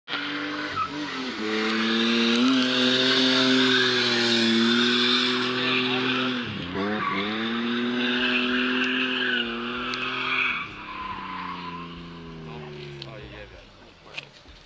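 A drifting car's engine held at high revs with its tyres squealing through a long slide. The revs dip sharply about six and a half seconds in and pick up again; near the end the squeal stops and the engine pitch falls away as the car slows.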